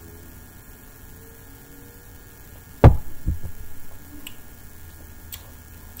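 A pint glass of beer set down on a wooden table: one loud thump just before the middle, then a smaller knock about half a second later. A steady low electrical hum runs underneath.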